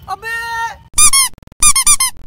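A drawn-out shouted exclamation, then two loud, high-pitched squeaks about half a second apart, each rising and falling in pitch: a comic squeak sound effect.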